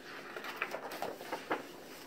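Soft paper rustling and a few light crinkles as a large picture-book page is grasped and turned.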